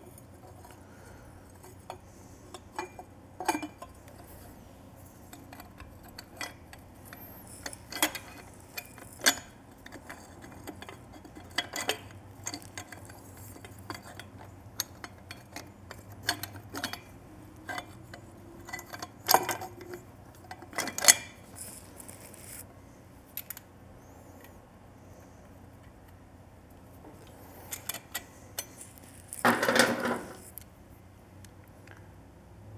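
Metal exhaust parts clinking and knocking by hand as a stainless head pipe and its flange are fitted into a motorcycle cylinder head's exhaust port: irregular light clicks and clinks, with a quick cluster of them near the end.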